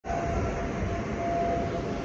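Steady mechanical hum and rushing noise with a thin constant whine running through it.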